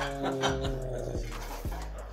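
A man making an airplane-engine noise with his voice: one long, steady humming drone.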